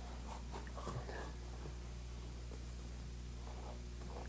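Faint rustling and light scraping as a wire is pushed through a length of heat-shrink tubing, a few soft ticks among it, over a steady low hum.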